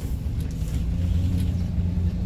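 Cargo van driving slowly, heard from inside the cab: a steady low engine hum with road noise.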